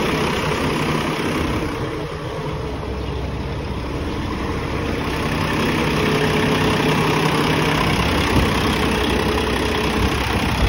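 PACCAR MX-13 inline-six diesel engine of a semi-truck idling steadily, just restarted after its fuel filters were changed and the fuel system bled. A faint steady whine joins the engine sound about halfway through.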